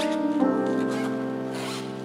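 Piano playing slow sustained chords, a new chord struck about half a second in and left to ring and fade. Short patches of dry rustling noise sound over the music around the middle and again near the end.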